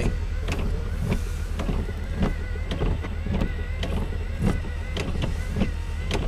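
Inside a car in the rain: irregular taps of raindrops on the car body and a windshield wiper sweep over a steady low rumble.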